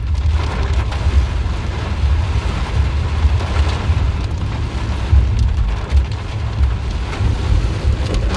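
Heavy rain pelting a car's windscreen and roof, heard from inside the moving car, as a steady loud hiss over a deep rumble.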